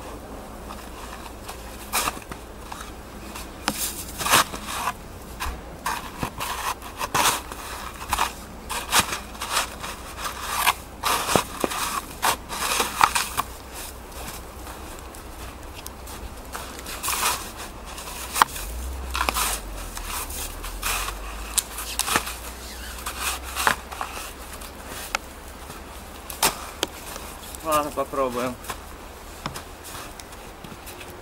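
Small folding shovel digging and scraping packed snow away from a bicycle's wheels to free it from deep snow: a run of irregular crunching scrapes and knocks.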